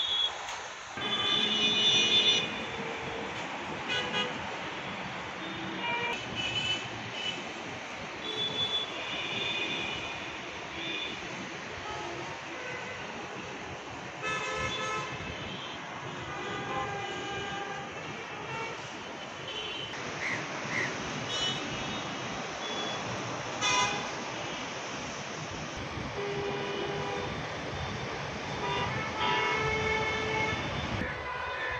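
City traffic: a steady hum of vehicles with frequent car horns honking at varied pitches. The loudest is a horn blast lasting about a second, starting about a second in.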